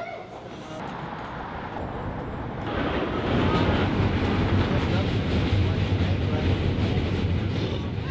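Subway train running: a steady noise with a low hum that grows louder about three seconds in, with voices mixed in.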